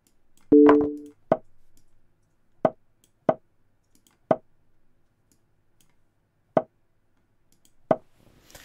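Move sound effects from an online chess board during a fast bullet game. About half a second in comes one louder sound with two steady notes lasting about half a second. After it come about six single short plopping clicks at irregular gaps of roughly a second, one for each move played.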